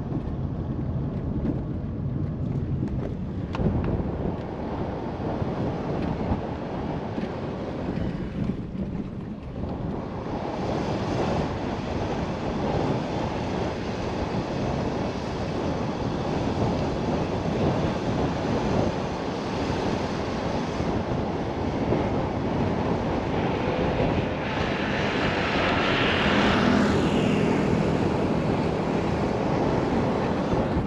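Car driving along a paved road: steady tyre and engine noise with some wind, growing slightly louder in the second half.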